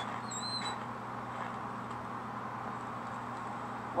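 A short, high-pitched creak of a rusty metal hinge, wavering briefly about half a second in, over a steady faint hiss.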